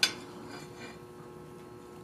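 A single short metallic clink of steel on the anvil at the start, as the tongs holding the forged hand shift on the anvil face. After it comes a faint steady hum of the shop.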